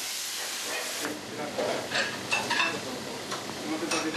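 Food sizzling in frying pans on a gas range, with a loud hiss as a pan flares up. The hiss fades after about a second, and a few sharp metallic clinks of pans and utensils follow.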